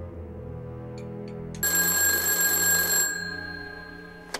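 Soft film-score music, and about one and a half seconds in a black rotary desk telephone's bell rings once, for about a second and a half, then dies away.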